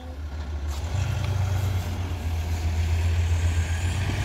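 VW Crafter camper van's turbodiesel engine pulling away at low speed, a steady low engine note growing gradually louder. Near the end a high turbo whistle begins to rise.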